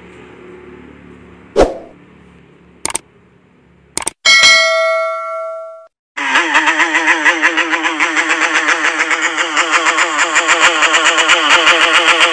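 Video outro sound effects: a sharp hit, a smaller one and a couple of clicks, then a ringing ding that fades out over about a second and a half. About six seconds in, a loud, dense, pulsing sound with a wavering pitch starts and carries on.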